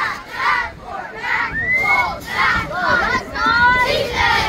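A squad of middle-school cheerleaders shouting a cheer together, in short rhythmic bursts.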